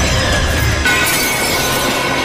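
Battle sound effects, a crash like breaking glass, layered over the dramatic score. A fresh hit comes a little under a second in.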